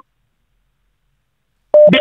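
Dead silence, a gap in the audio, then a man's voice resumes near the end.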